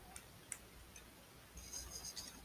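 Faint, sparse clicks of a plastic transforming robot figure's parts being handled, a few small ticks in the first second, then a soft scraping rustle starting near the end.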